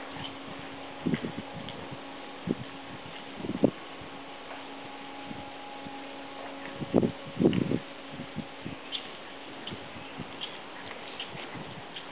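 Horse hooves trotting on soft indoor-arena footing, heard as a few irregular, muffled thuds, the loudest in a cluster about seven seconds in, over a steady low hum.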